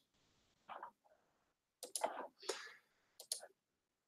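A few faint, short clicks spread over a few seconds, typical of a computer mouse being clicked while working in image-processing software.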